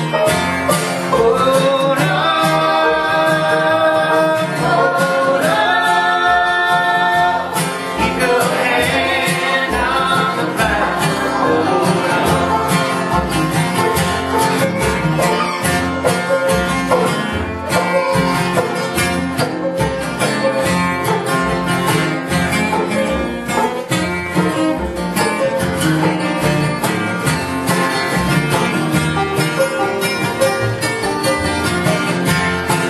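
Bluegrass gospel band playing with acoustic guitar, banjo and upright bass, the bass pulsing steadily underneath. Voices sing long held notes for the first eight seconds or so, then the picked instruments carry on.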